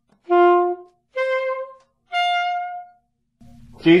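Alto saxophone playing three separate, rising notes, each under a second long with short gaps: written D with the octave key, A, then the high palm-key D. A voice starts speaking near the end.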